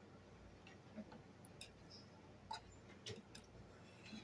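Near silence, broken by about five faint, short clicks and taps of eating at a table: forks on plates and chewing.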